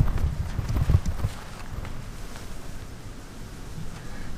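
Footsteps on grass and handling of a handheld camera: a run of irregular low thuds for about the first second and a half, then a low, quiet outdoor background.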